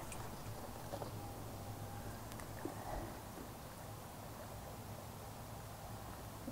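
Water poured from a plastic gallon jug into a bucket of wort, a faint steady trickle over a low hum, topping the batch up to its five-gallon mark.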